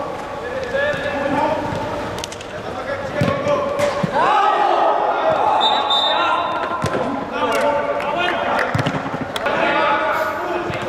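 A football kicked several times on artificial turf, with players shouting to each other across the pitch, one long loud call about four seconds in.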